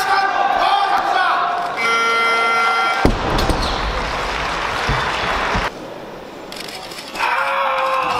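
Voices shouting in a large hall while the lift is held, then a steady tone for about a second. About three seconds in, the loaded barbell with its rubber bumper plates is dropped from overhead onto the platform: one loud crash, then heavy bouncing knocks for a couple of seconds.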